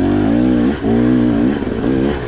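KTM 300 two-stroke dirt bike engine running on the trail, revs rising and falling with the throttle. The engine note sags and picks back up twice, about three-quarters of a second in and again near the end.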